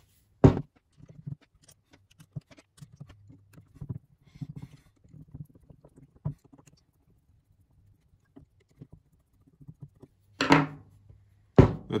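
A metal gearbox cap set onto a treadmill incline motor's housing with a sharp click, then faint scattered clicks and scrapes as its small screws are turned in with a screwdriver. Louder knocks and a thump near the end as the motor is handled and set down.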